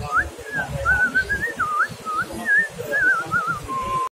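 Whistling: a string of short notes that glide up and down and trill, ending on one held note, over an irregular low rumble.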